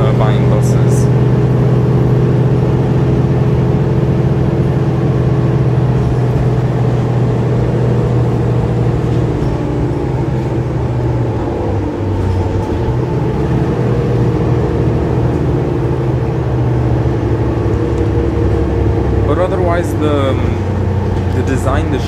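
Mercedes-Benz O530 Citaro city bus running under way, heard from inside the passenger cabin: a steady drone from its OM906hLA six-cylinder diesel and driveline, its pitch dropping slightly about halfway through. Voices are heard briefly near the start and again near the end.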